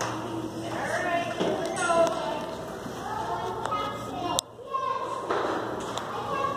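Young children's high-pitched voices babbling and calling out in a large echoing room, with a few sharp taps around the middle.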